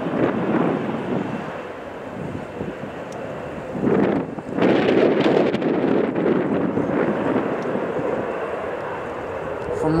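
Wind buffeting the microphone, with stronger gusts about four and five seconds in, over a steady background rumble.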